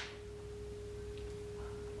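A faint, steady single tone held without change, an electrical whine in the recording.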